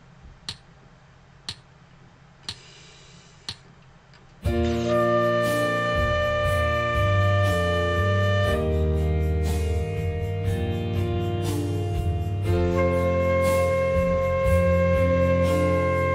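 Four clicks a second apart count in, then a piano backing track starts and a concert flute holds a long D, rests for a bar while the piano plays on, and then holds a long C, a beginner whole-note exercise.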